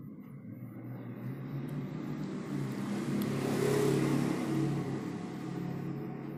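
A vehicle passing: an engine rumble that swells to a peak about four seconds in and then fades.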